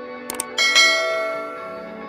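Subscribe-button animation sound effect: a quick mouse click, then a bright bell chime that rings out and fades over about a second, over soft background music.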